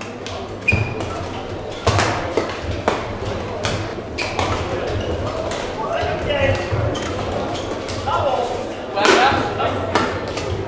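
Badminton rally: rackets strike the shuttlecock in sharp cracks, roughly a second apart, echoing in a large sports hall. A voice calls out near the end as the rally stops.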